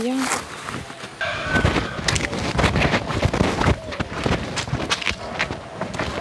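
Footsteps crunching on a dirt path scattered with dry leaves: an irregular run of short crackles and scuffs over a low rumble, starting about a second in.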